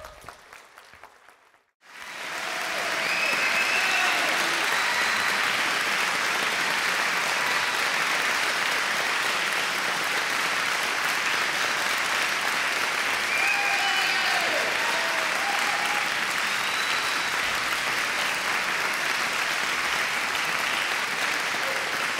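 Audience applauding steadily after a talk, starting about two seconds in, with a few voices calling out over the clapping.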